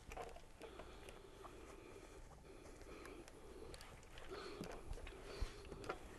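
Faint rustling and sliding of a clothes iron being pushed over quilted cotton fabric, with the fabric being smoothed and shifted by hand; a little louder near the end, with a couple of soft knocks.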